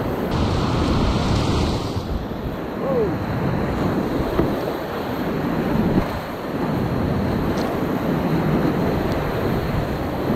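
Whitewater rapid rushing and churning around a kayak as it paddles down through breaking waves. Water crashes over the bow and splashes the microphone, which picks up buffeting.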